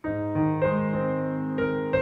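Piano played slowly with both hands: an A-flat major chord spread out as an arpeggio in the left hand (A-flat, E-flat, A-flat, C) under a right-hand melody. The notes enter one after another and ring on over each other.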